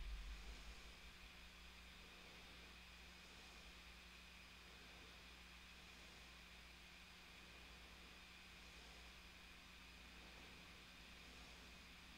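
Near silence: faint room hiss and hum, with a brief low thump right at the start that dies away within about a second.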